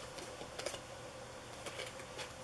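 A deck of tarot cards being thumbed through by hand, with a few faint, light clicks as the cards slide over one another.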